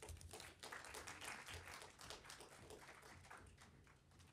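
Light applause from a small audience, a thin patter of hand claps that fades away toward the end.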